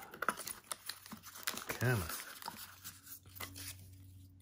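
Crumpled white packing paper rustling and crinkling in a cardboard box as it is pulled out by hand, in a run of small irregular crackles.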